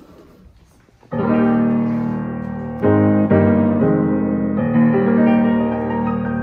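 A rebuilt 1971 Yamaha G2 grand piano, fully restrung with new strings, being played: a chord is struck about a second in and held, followed by three more slow chords that ring on into one another.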